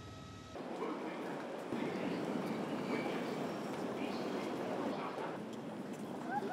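Busy railway station concourse: crowd chatter, footsteps and wheeled suitcases rolling. It starts suddenly about half a second in, replacing a steady low hum.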